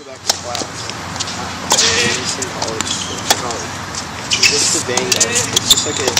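Tennis rally: the serve and the returns, heard as sharp pops of ball on racket strings about a second apart, the loudest a little past the middle, over steady outdoor background noise.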